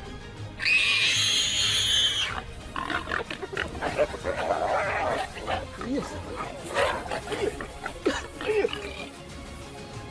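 Warthog squealing loudly in distress, one long shrill squeal of about two seconds followed by a run of shorter squeals and grunts, as a leopard attacks it.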